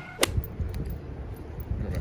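A sharp click about a quarter second in, followed by low rumbling wind and handling noise on a phone microphone being carried while walking outdoors.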